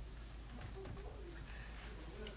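Dry-erase marker writing on a whiteboard: faint strokes and light ticks, with a few faint low gliding tones.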